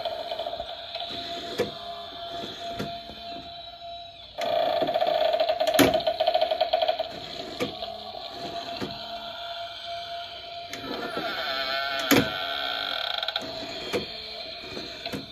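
Animated Halloween book-stack prop running: its small speaker plays a buzzing electronic sound effect that comes in three spells, over sharp clicks from the mechanism as the books shift on the shelf.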